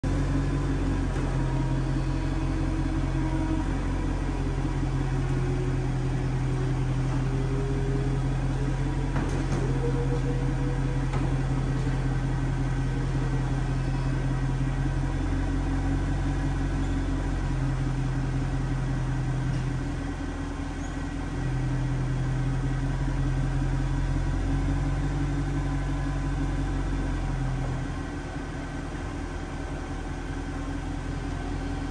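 The power soft-top mechanism of a 2008 Jaguar XKR convertible running as the fabric roof closes: a steady motor hum that pauses briefly twice, over a constant low drone. The hum stops near the end and the sound drops in level.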